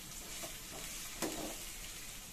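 Sliced onions frying in oil in an aluminium kadai, sizzling steadily, while a spatula stirs them and scrapes the pan, with one louder scrape a little over a second in.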